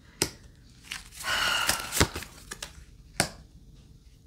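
Tarot cards being handled and laid down on a table: a few sharp taps as cards are set down, with a brief papery rustle of a card sliding about a second in.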